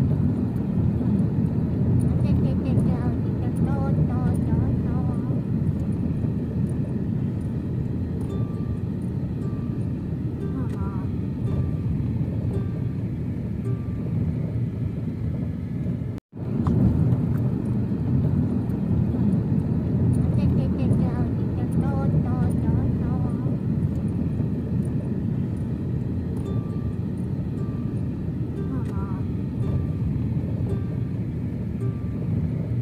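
Steady low rumble of a car driving, road and engine noise heard from inside the cabin, with faint higher sounds mixed in and a brief dropout about halfway through.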